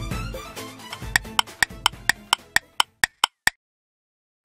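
Jingle music fading out, then a clock-like ticking sound effect, about four sharp ticks a second for a little over two seconds, which stops abruptly.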